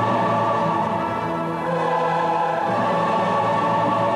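Large choir and symphony orchestra performing a choral work, the choir singing held chords. Loudness dips briefly about a second and a half in, then a new chord follows.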